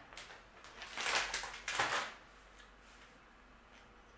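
Crinkling of a foil snack bag being handled, in a short burst of rustles about a second in, then quiet room tone.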